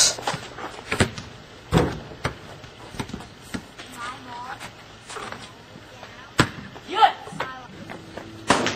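A basketball being played on a paved driveway hoop: several sharp, separate thuds of the ball hitting the ground and the backboard, with brief voices of the players in between.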